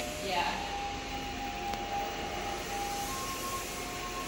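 Steady room hiss with a held electronic tone from the video-art installation's old CRT televisions; about three seconds in the tone changes to a slightly higher pitch.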